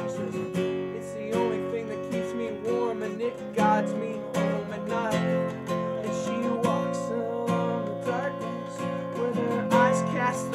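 Acoustic guitar strummed and picked in a steady rhythm: an instrumental passage of a song.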